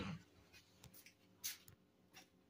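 Near silence with a few faint short ticks and two brief soft brushing sounds about halfway through.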